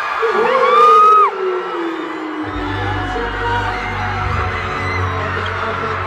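Arena concert crowd screaming, with high shrieks loudest about a second in; about two and a half seconds in, a song's heavy bass comes in under the crowd and keeps going.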